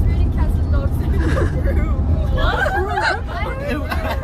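Steady low rumble of a coach bus driving, heard from inside the passenger cabin, under a group's chatter and laughter.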